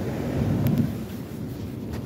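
Heavy sea surf breaking and washing on the shore, a low steady noise that swells about half a second in, with wind on the microphone.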